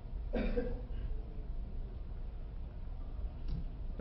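A man coughs once, briefly, about a third of a second in, against a low steady hum.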